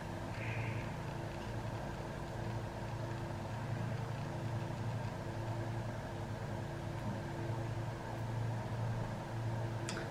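Steady low background hum, with a few faint steady tones above it, holding even throughout.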